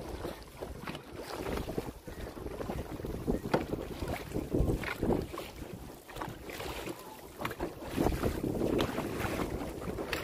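Wind buffeting the microphone over uneven water splashing around a paddled dragon boat, a little louder near the end.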